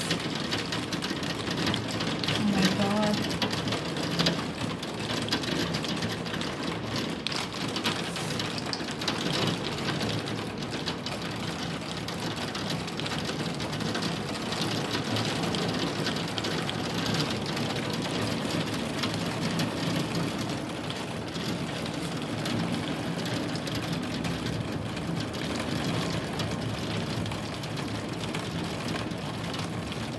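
Heavy rain pouring down steadily, a dense, even rush of countless drops striking surfaces.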